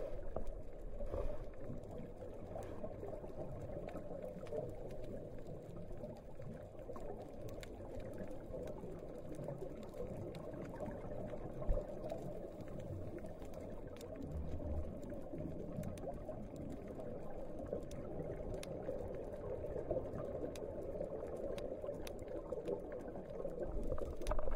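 Steady muffled underwater noise with bubbling, picked up by a camera under water on a scuba dive. A single low knock comes about halfway through.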